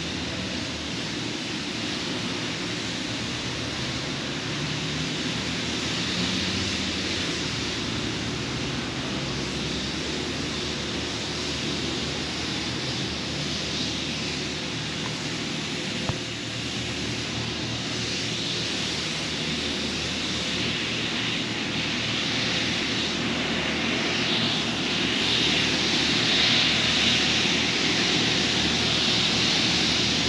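City street ambience: a steady wash of distant traffic noise that grows a little louder near the end as the road nears. A single brief tick about sixteen seconds in.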